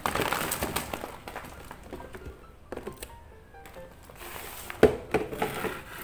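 Paper squishies, taped paper toys, tumbling out of a plastic storage box onto a floor: a burst of paper rustling and crinkling at the start, then scattered light taps, with a sharp knock about five seconds in. Quiet background music plays under it.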